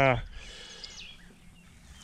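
A man's brief "uh" at the start, then quiet outdoor background with a faint low rumble and a few faint bird chirps.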